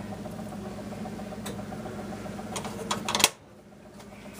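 A saucepan taken off a stovetop and kitchen bottles handled: a few clinks and knocks, the loudest just after three seconds in, over a steady background hum that drops away right after it.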